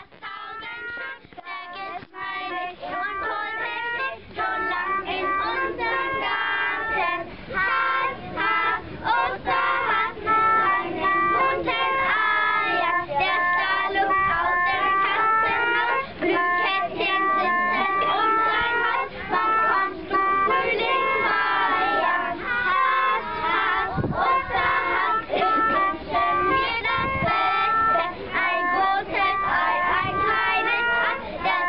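A group of children singing a song together, accompanied by an acoustic guitar. The singing starts faint and grows louder over the first few seconds, then carries on steadily.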